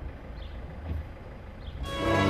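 Motorboat engine running with a steady low drone as the boat cruises. Background music comes back in abruptly near the end.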